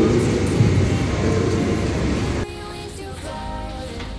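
Echoing noise of a large, bare room with a man's brief spoken word, cut off suddenly a little past halfway by background music.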